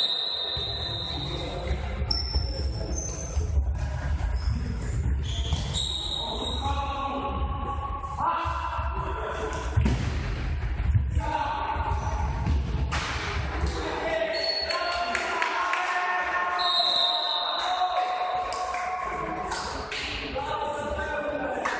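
Futsal ball being kicked and bouncing on a sports-hall floor: scattered thuds that echo around a large gym.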